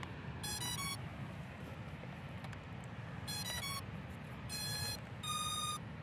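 Eachine DOMIBOT EX5 Pro drone beeping as it powers on: a quick run of short stepped notes, the same run again about three seconds later, then two longer single beeps near the end. This is the drone's start-up chime before calibration.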